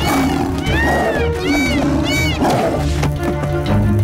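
Cartoon tiger growling and snarling several times over background music.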